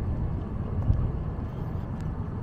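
Low, uneven outdoor rumble of wind on the microphone mixed with distant traffic, with a few faint ticks.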